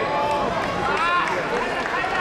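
Raised voices calling out, short phrases with bending pitch.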